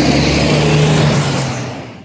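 A road vehicle's engine running close by with a steady low hum, loud at first and fading away near the end.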